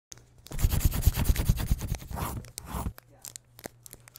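Paper sound effect: dense crinkling and scratching of paper for about two and a half seconds, then a few scattered clicks.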